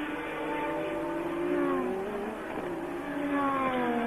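Renault RE30B Formula One car's 1.5-litre turbocharged V6 running at speed, its engine note falling in pitch twice as the car goes by.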